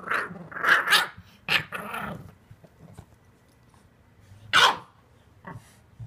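English bulldog puppy growling in several bursts during the first two seconds, then giving one short, sharp bark a little past halfway, as it wrestles with its plush dog bed.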